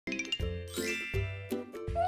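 Short cheerful intro jingle: a quick run of high tinkling chime notes, a rising sparkly sweep, and three deep bass notes about three-quarters of a second apart.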